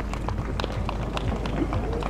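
Hoofbeats of a show-jumping horse cantering on a sand arena just after landing over a fence: uneven dull knocks, several a second.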